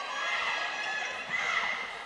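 Gymnasium crowd and players' voices at a volleyball match, a steady murmur echoing in the hall, with no distinct ball hits.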